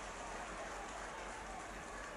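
Faint, steady hiss of outdoor ground ambience with no distinct events.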